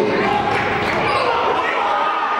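A basketball dribbled on a gym's hardwood floor during live play, with short squeaks and voices ringing in the large hall.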